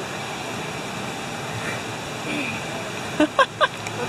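Steady background noise of road traffic, with a few short loud spoken words about three seconds in.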